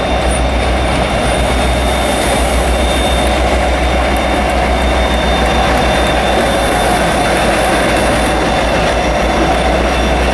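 GWR Class 57 diesel locomotive running slowly through the platform with its coaches, a loud, steady engine drone. A thin high squeal from the wheels sounds over it.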